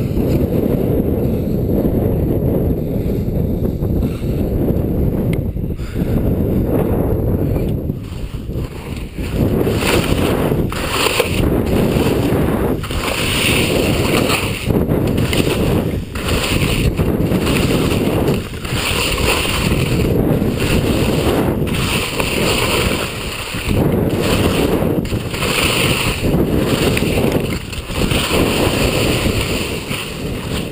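Wind buffeting a helmet camera's microphone as a telemark skier descends, with skis scraping and hissing over packed snow. From about a third of the way in, the scrapes come in a steady turn-by-turn rhythm, roughly one every second.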